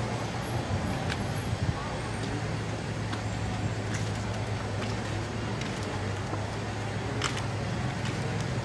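Background noise: a steady low hum and hiss with indistinct voices and a few faint clicks.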